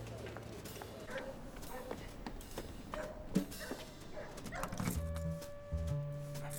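Soft, scattered outdoor background sounds with faint distant voices, then music starts about five seconds in: a held note over a repeating low bass pattern.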